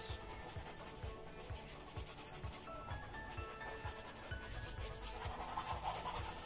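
Paintbrush rubbing a thin acrylic base coat onto a canvas with light, gentle strokes, under faint background music.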